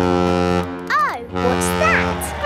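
Ship's horn on a cartoon parade boat float sounding two long, low blasts, with a short rising-and-falling vocal call between them.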